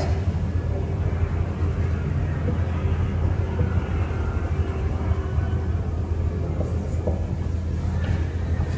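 Steady low background rumble, like room or building hum.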